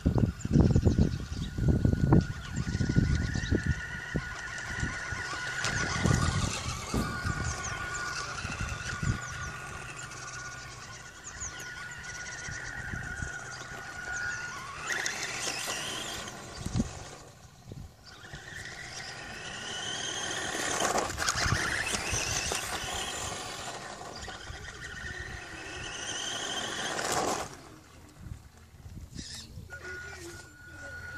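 Electric RC buggy, a Kyosho Sandmaster, driving with its motor whining, the pitch rising and falling several times as it speeds up and slows. Heavy rumbling noise in the first few seconds.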